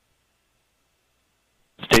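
Near silence on a launch-control voice loop. Near the end a sharp click comes as a man's voice starts a status callout.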